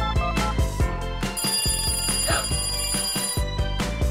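A telephone ringing, one long ring of about two seconds starting about a second and a half in, over background music.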